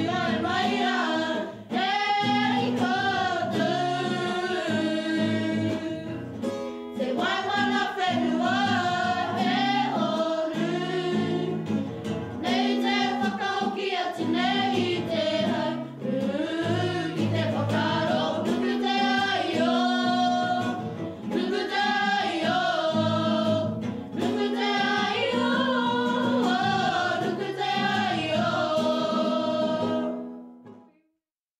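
A group of young voices singing a song together to an acoustic guitar.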